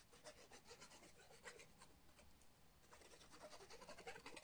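Faint rubbing and light scratchy ticks as the tip of a squeezy liquid-glue bottle is drawn in zigzags across a strip of cardstock held in the hand.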